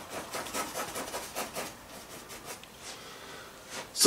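A paintbrush scrubbing paint onto a toothy stretched canvas in quick, short strokes, several a second, thinning out near the end.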